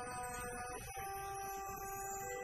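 Marching band's brass playing held chords, moving to a new chord about a second in.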